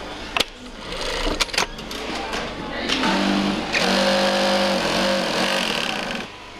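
Industrial sewing machine stitching fabric, running in a steady burst of about three seconds from about halfway, preceded by a few sharp clicks.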